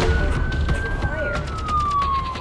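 Fire-rescue vehicle's siren wailing: one slow rise in pitch, then a long, steady fall, over a low rumble of traffic.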